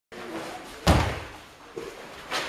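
A sharp thud with a short ringing tail about a second in, then a smaller knock near the end: a karateka's bare foot stamping on the padded mats as she steps into her kata.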